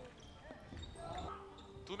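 Faint sounds of a basketball game on an indoor court: a basketball bouncing on the hardwood floor, with faint voices in the background.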